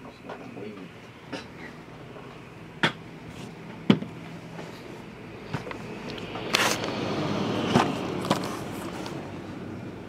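Table-top handling noise: two sharp knocks about three and four seconds in, then a couple of seconds of rustling with a few clicks as a shrink-wrapped trading-card box is picked up.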